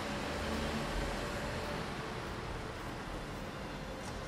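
Steady outdoor background noise: an even hiss with a low rumble, like distant street traffic.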